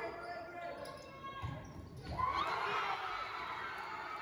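Volleyball thudding in a gymnasium hall about one and a half seconds in, then a loud burst of spectators yelling and cheering as the deciding point is won.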